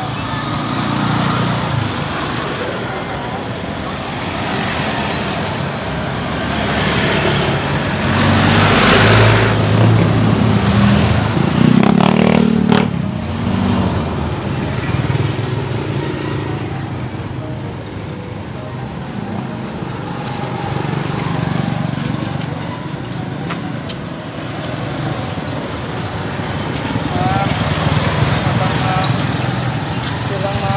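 Road traffic passing close by: cars and motorcycles driving past on a roadside, louder for a few seconds near the middle as a vehicle goes by.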